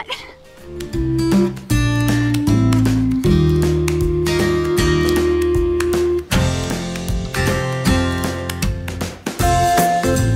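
Background music led by strummed acoustic guitar with a steady bass line, starting about a second in.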